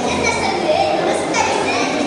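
Boys' voices speaking over a steady background murmur of a crowd.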